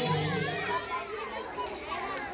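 A dance song's music stops under a second in, leaving a crowd of young children chattering and calling out.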